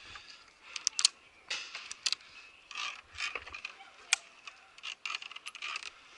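Steel carabiners of a ropes-course safety lanyard clicking and scraping on the steel safety cable: many sharp, irregular metallic clicks.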